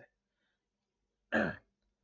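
Near silence, then a man clears his throat once, briefly, a little past the middle.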